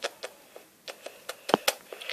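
Scattered light clicks and taps of handling, a dozen or so, the strongest about a second and a half in, as the tablet filming is moved about.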